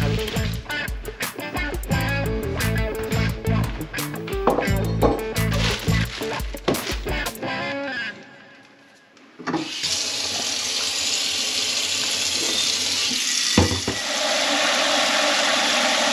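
Background music with a steady beat for about the first half, then a kitchen faucet running a steady stream of water into a ceramic crock pot insert standing in a stainless steel sink, filling it. There is a single brief knock shortly before the end, after which the water runs a little louder.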